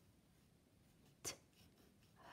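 Faint scratching of a pencil writing letters on paper.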